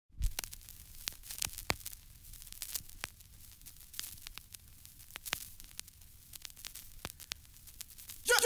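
Vinyl record surface noise from a 7-inch single's lead-in groove: a faint hiss with irregular crackles and pops, a few of them sharper than the rest.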